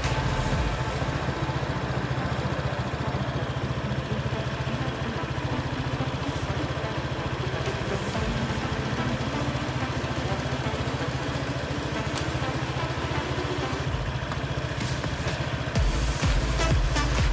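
A steady low drone, like a running engine or machinery, with background music mixed in.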